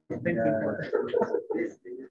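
Indistinct talking close to the microphone, in short broken phrases.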